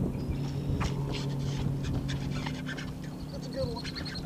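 Bow-mounted electric trolling motor humming steadily, with a run of quick high ticks near the end.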